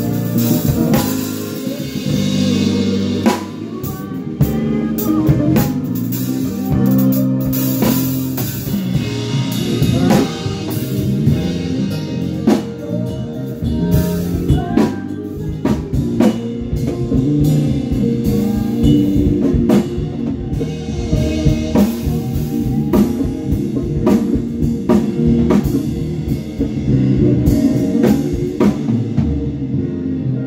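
A DW drum kit played in a full band groove, with snare, kick and cymbal hits over a bass line and other pitched band instruments.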